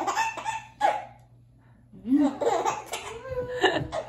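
Baby girl laughing, in two bouts: one at the start and a longer one from about two seconds in.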